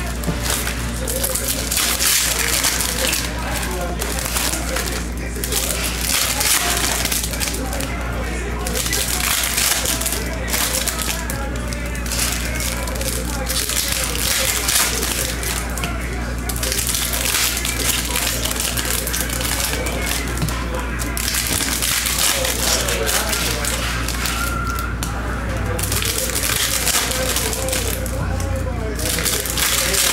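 Foil trading-card pack wrappers being torn open and crinkled, pack after pack, in repeated bursts of crackling with short gaps between them.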